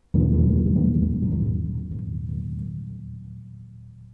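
A large drum struck with a soft mallet: a deep, pitched boom that starts sharply just after the start and slowly dies away over the next few seconds.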